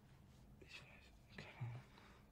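Near silence, with a few faint, quiet words spoken in short bits about a second in.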